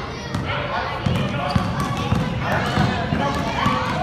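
A basketball dribbled on an indoor court floor, bouncing repeatedly, with children's voices and calls over it.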